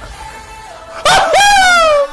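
A man's loud, high-pitched wail starts about halfway in and slides down in pitch for about a second: an excited vocal reaction over quieter background music.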